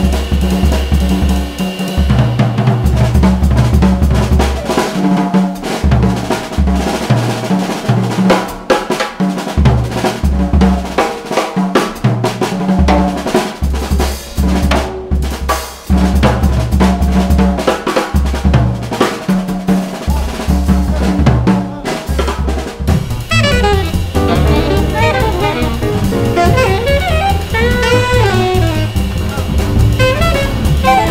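Jazz drum kit soloing with busy snare, bass drum and cymbal strokes over a repeating double bass figure. About three quarters of the way through, an alto saxophone comes back in with quick melodic lines.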